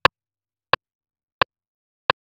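Metronome click counting in before recording, three clicks evenly spaced at 88 beats per minute.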